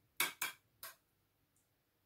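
Three quick clinks of a kitchen utensil against dishware within the first second.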